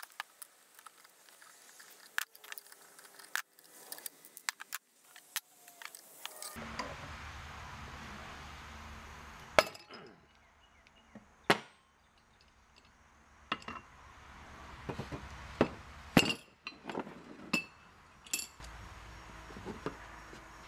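Hand tools on a small Kohler engine's flywheel, sped up: scattered sharp metallic clinks and knocks of a wrench and a flywheel puller as the flywheel nut and flywheel come off. The two loudest clanks come about ten and twelve seconds in, with stretches of faint hiss between them.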